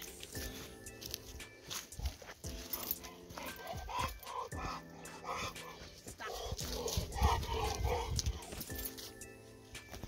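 Background music with held notes runs throughout. Over it a dog vocalizes in short bouts about four seconds in and again around seven to eight seconds, with light crunching of steps on a dry-leaf trail.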